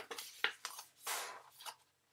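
Sheet of cardstock rustling as it is lifted and folded corner to corner on a cutting mat. There is a short crackle about half a second in and a longer rustle around the one-second mark.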